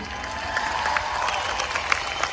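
Large audience applauding, with some cheering, in response to a greeting from the stage.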